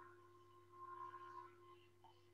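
Near silence: a faint steady low hum with thin steady tones, swelling slightly a little past the middle.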